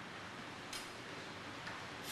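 Steady hiss of a quiet classroom with faint scratching of pens on worksheet paper: one brief scratch a little under a second in and a small tick near the end.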